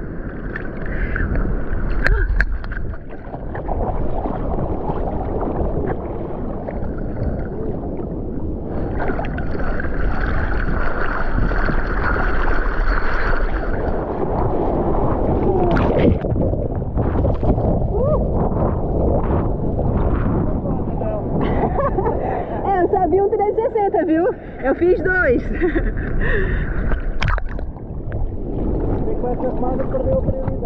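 Seawater sloshing and splashing right at a camera held at the water's surface on a bodyboard, with muffled gurgling when the camera dips under the water.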